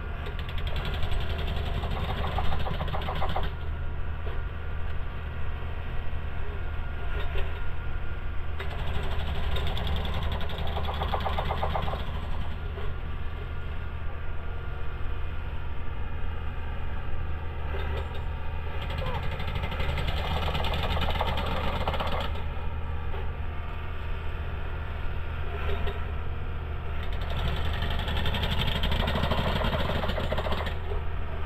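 Railway track-maintenance machine's engine running steadily with a low hum, with a louder burst of work noise lasting two to three seconds about every nine seconds.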